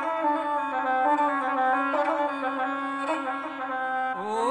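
Gusle, the single-string bowed folk instrument, playing a short melodic passage of stepped notes on its own between sung verses of an epic song.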